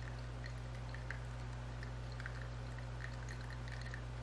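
Quiet room tone: a steady low electrical hum under a faint hiss, with a few tiny ticks.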